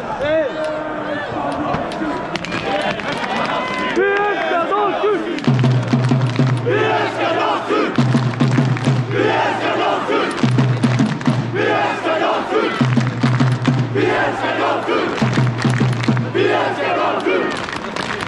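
Football supporters chanting together in the stand, shouting at first, then from about five seconds in settling into a rhythmic chant whose low sung note comes back roughly every two and a half seconds, with hand-clapping.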